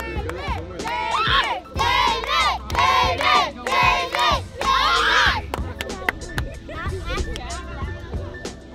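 A group of children shouting and cheering together, many high voices rising and falling in loud waves from about a second in until about five and a half seconds in, then dropping to quieter chatter.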